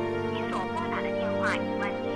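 Soft background music with a thin, telephone-filtered recorded operator voice heard through a mobile phone, announcing in Mandarin that the number dialled is switched off.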